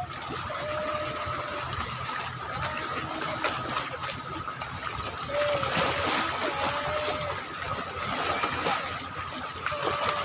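Small choppy sea waves lapping and splashing at the water's edge, with a thin steady high tone behind them.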